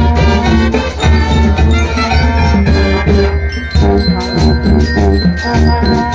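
Marching band playing loudly: trombones and trumpets in chords over a steady drum beat.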